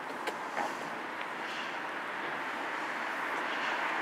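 Steady vehicle noise, growing gradually louder towards the end, with a couple of faint clicks in the first second.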